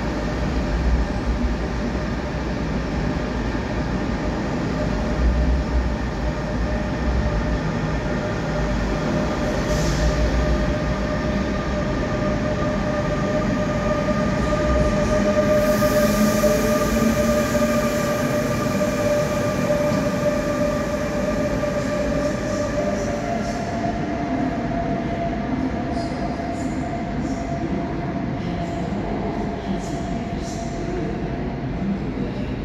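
NS intercity train of double-deck coaches rolling through an underground station, with steady rumble and rail noise. Its electric locomotive passes around the middle with a steady whine from the traction equipment, and the whine's pitch steps up about two-thirds of the way through as the train draws away.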